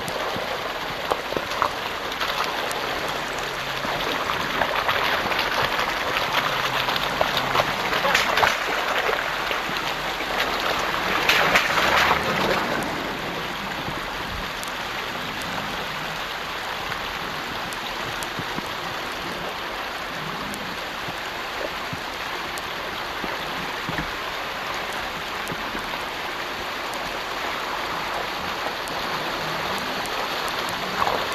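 Small mountain brook babbling over rocks: a steady rush of running water that swells for a few seconds about ten seconds in, then settles.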